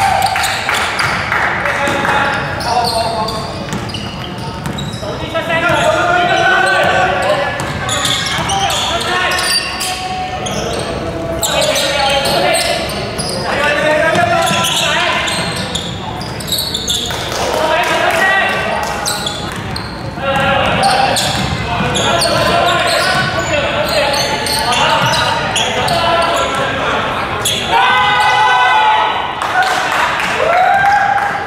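Basketball game in a gymnasium: players' voices and shouts echo through the hall, with the ball bouncing on the wooden court.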